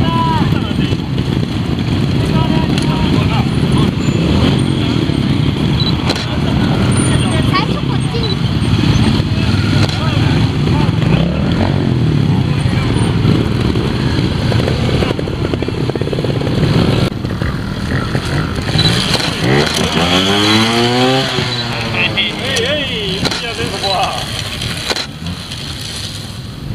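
Small trials motorcycle running, with a continuous rough low rumble and, about twenty seconds in, several quick revs that rise and fall in pitch.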